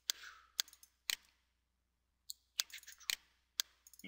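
Computer mouse button clicks: a scattered series of short, sharp clicks, some in quick pairs like double-clicks opening folders.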